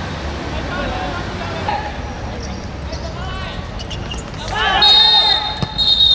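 Players' voices calling across an outdoor football court, swelling into loud shouting about four and a half seconds in, as a referee's whistle starts a long, steady, high blast near the end.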